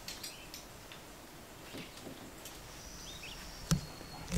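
Quiet outdoor ambience with faint scuffs and small clicks, a faint high thin whistle a little past the middle, and one sharp click near the end.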